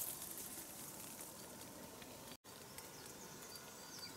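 Faint outdoor mountain ambience: a quiet, even background with a few faint high ticks, broken by a brief complete dropout a little over two seconds in where the recording cuts.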